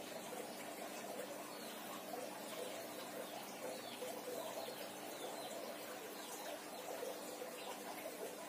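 Kerokan: a coin scraped repeatedly over the skin of a person's back, a soft rasping, with faint high squeaks throughout.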